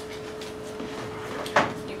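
Quiet classroom room tone with a steady electrical hum, and one brief soft noise about a second and a half in.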